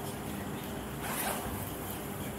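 Steady low room hum with one short rustling noise about a second in.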